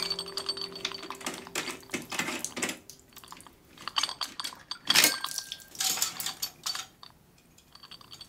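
Rapid small metallic clicks and clinks of hands and tools working a leaking chrome sink drain trap under a washbasin, with a few louder knocks about five seconds in.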